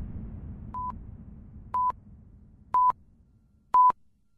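Countdown timer beeping: short, single-pitch beeps about once a second, four in all, the first one fainter. A low rumble fades away under the first few beeps.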